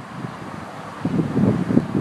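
Gusty wind buffeting a phone's microphone: a low, uneven rumble that swells from about a second in, left over from Hurricane Irene's strong winds.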